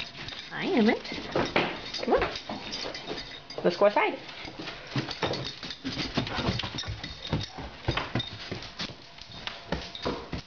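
A large dog whining and yelping in excitement, loudest about a second in and again about four seconds in, amid scattered thumps and knocks as it runs up carpeted stairs.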